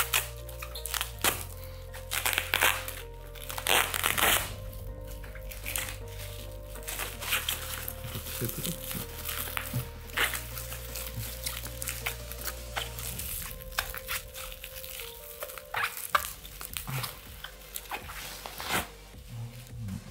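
A bubble-wrap padded mailer crinkling and crackling in irregular bursts as it is handled and pulled open, loudest in the first few seconds, over steady background music.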